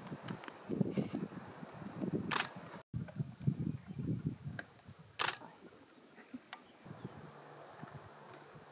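Leopard feeding on a carcass, with irregular low tearing and chewing sounds that die down after about six seconds. Two short, sharp clicks come about two and five seconds in, and the sound cuts out briefly near three seconds.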